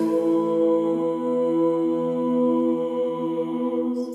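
Small a cappella mixed choir (SATB) holding one long sustained chord, the fermata on the last syllable of "Jesus", with one inner voice moving about a second in. The chord is released with a hissed "s" at the very end.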